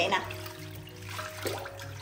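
Water sloshing and splashing in a stainless steel sink as hands swish shredded coconut strips to rinse them, under soft background music.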